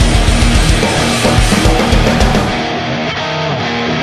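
Visual kei rock song in an instrumental passage with guitars and a driving drum beat. About two and a half seconds in, the low drum beat drops out and the treble falls away, leaving a quieter, thinner passage.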